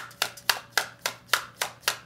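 A deck of cards being shuffled overhand: a regular patter of sharp card slaps, about four a second.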